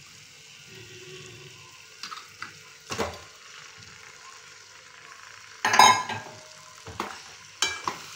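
Masala sizzling in an aluminium kadai as marinated chicken pieces are tipped in from a steel bowl and stirred with a slotted steel spoon. Scattered metal clanks of bowl and spoon on the pan; the loudest, about six seconds in, rings briefly.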